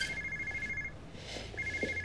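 Mobile phone ringtone: a two-tone electronic trill that stops about a second in and starts again near the end.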